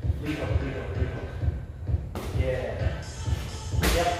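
Background music with a steady beat and vocals. Near the end comes a sharp thud as a roundhouse kick lands on a freestanding punching bag.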